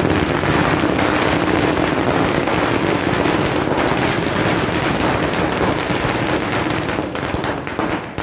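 A string of firecrackers going off as a rapid, continuous crackle of small bangs that thins out and stops near the end.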